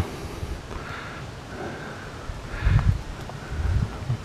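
Hand digging and scraping through loose potting soil and fine roots, a soft rustling with two low thumps, one a little before three seconds in and one near the end.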